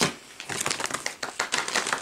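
Snack packaging crinkling as it is handled: a rapid, irregular run of crackles, preceded by one sharp click at the start.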